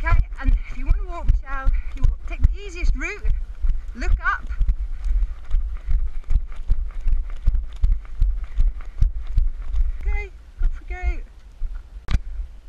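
Running footsteps on a dirt forest trail, a steady train of footfalls, over a low rumble from the moving camera's microphone. A woman's voice calls out in short bursts near the start, about four seconds in, and again near the end.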